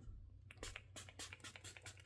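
Faint clicks and taps from a small pump-spray bottle of rosewater face mist being handled and worked, a string of short ticks with a slightly stronger click near the end.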